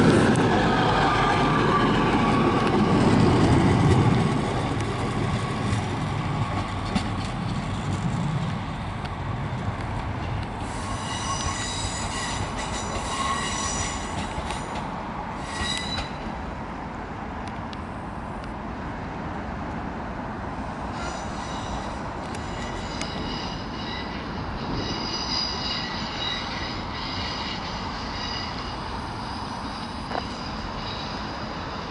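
British Rail Class 153 diesel railcar passing close and pulling away, its engine rumble and wheel noise loud at first and fading after about four seconds as it draws off. From about ten seconds in, its wheels squeal in high-pitched bursts on and off as it takes the curves and points of the junction.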